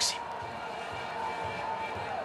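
Steady low background of a stadium crowd at a pesäpallo match, with faint distant voices.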